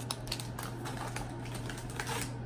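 Light scattered clicks and crinkles of MRE ration pouches being handled, over a low steady hum.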